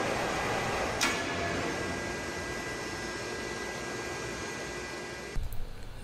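Steady machinery hum with a faint high whine, fading slowly, with a brief click about a second in; it cuts off suddenly near the end.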